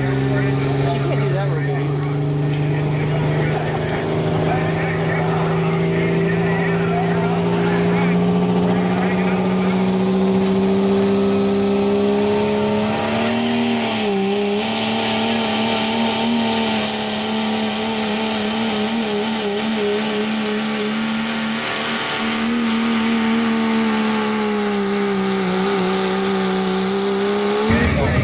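Dodge Ram diesel pickup pulling a sled at full throttle: the engine note climbs over the first dozen seconds and then holds at high revs, while a turbocharger whistle rises steeply. The engine sound drops away abruptly at the very end as the pull ends.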